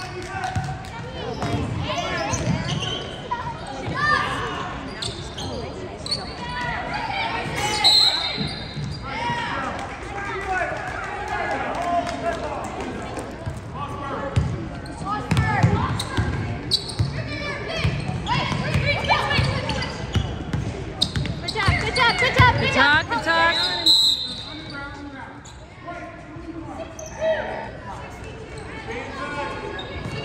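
Basketball dribbled on a hardwood gym floor, the bounces echoing in the large hall, under the constant chatter and calls of spectators. Two short shrill sounds stand out, about eight seconds in and again near twenty-four seconds.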